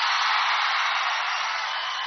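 Large crowd cheering, a steady even noise that slowly eases off.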